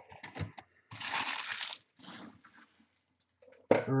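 Trading cards being handled: light clicks of cards at the start, then a papery rustle of about a second as the stack is flicked and slid, and a softer rustle after it.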